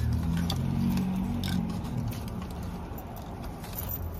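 A reusable fabric shopping bag rustling and crinkling as hands rummage inside it and draw out a handbag, with scattered light clicks. A low hum sits underneath and fades away about halfway through.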